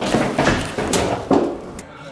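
Indistinct talking with a few thumps and knocks, the level dropping near the end.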